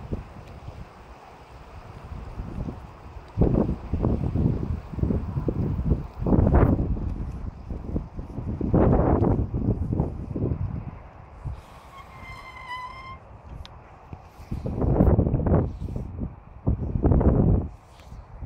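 Wind buffeting a phone's microphone in irregular loud, low gusts. About twelve seconds in there is a brief high, wavering tone lasting about a second.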